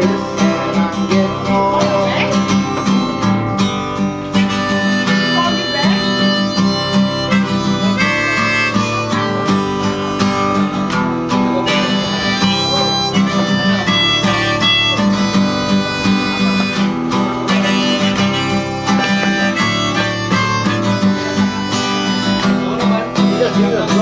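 Harmonica held in a neck rack, playing a melody of long held notes over a steadily strummed acoustic guitar, both played by one man.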